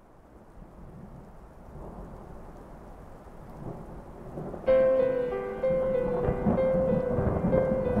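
Thunderstorm sound effect, low rumbling thunder with rain, swelling gradually from faint. About halfway through a keyboard melody of short repeated notes comes in loudly over the storm, opening the song.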